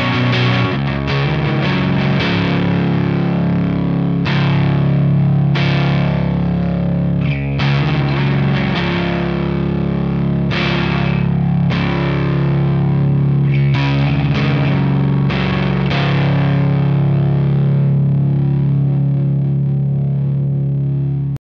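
Electric guitar (Fender Telecaster) played through the JPTR FX Jive reel saturator drive pedal into a Fender Twin-style amp simulation, giving a distorted, saturated tone. Chords are strummed and left to ring, with a new chord struck every one to three seconds.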